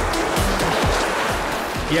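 Small sea waves washing and splashing over black volcanic shore rocks, with background music underneath.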